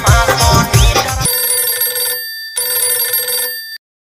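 Background music with a strong beat that stops about a second in, followed by an electronic phone ringtone: two steady rings with a short gap between, the second cutting off shortly before the end.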